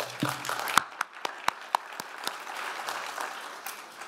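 Audience applauding: many hands clapping together, with a few sharper single claps standing out, dying away near the end.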